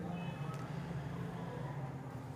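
Low steady hum of room tone, with no speech.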